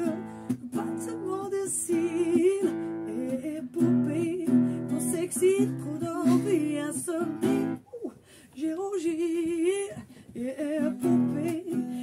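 Acoustic guitar strummed, with a voice singing along in wavering held notes. There is a brief break about eight seconds in, then a long held note.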